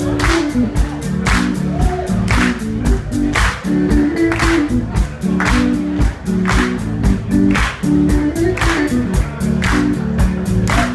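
Live blues-soul band groove of electric guitars, bass and drums, with the audience clapping along to a strong beat about once a second.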